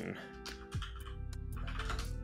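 Computer keyboard keys being typed: several separate key clicks as a search word is entered.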